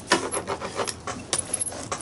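Brayer rolled over a paper journal page, spreading a thin layer of white gesso: an uneven scratchy rolling noise with a few sharp clicks.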